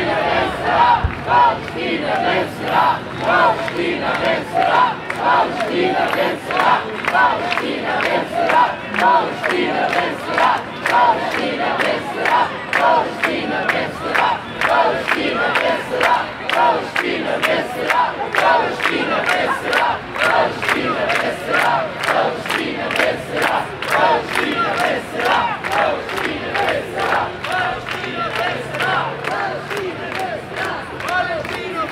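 A large crowd of protesters chanting slogans in unison, a steady rhythm of shouted syllables.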